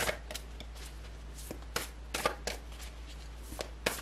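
A deck of large cards being shuffled overhand, hand to hand: irregular slaps and flicks of card on card, several a second, a few of them sharper than the rest.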